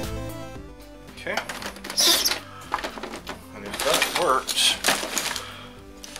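Background music fading out in the first second, then irregular knocks, clicks and clatter from the plastic case of an iMac G3 being handled and turned round on a workbench.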